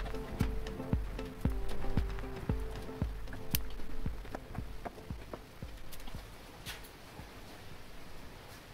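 Background music with a steady beat of about two a second, fading out over the second half. A few faint sharp clicks sound in the middle.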